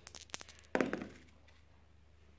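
A few plastic dice rattled in the hand with light clicks, then thrown onto a grass-effect gaming mat, landing with a soft thunk about three-quarters of a second in.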